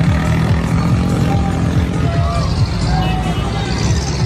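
Steady low rumble of a moving parade float, with music and crowd voices mixed in.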